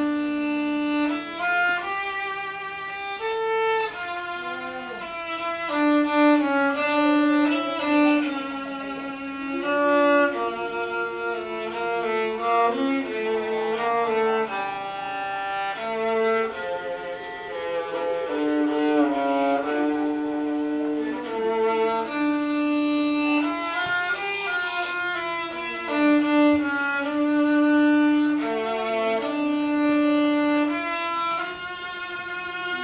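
Solo viola, bowed, playing a single melodic line that mixes long held notes with quicker runs.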